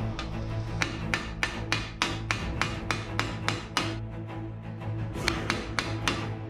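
A hand hammer strikes a curved sheet-metal helmet piece held over a steel stake, about three sharp metallic blows a second, with a short pause near the end. Background music plays under it.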